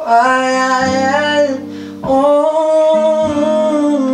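A man singing two long, held phrases to acoustic guitar accompaniment, the second beginning about two seconds in.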